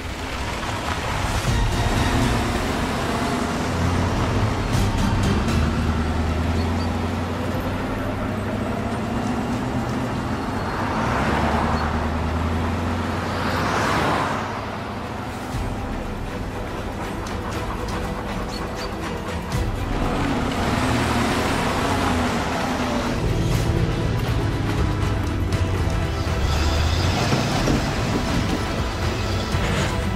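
Film score music over the engines of off-road vehicles in a convoy driving on a rough forest road. The engine noise swells and falls away several times as vehicles pass.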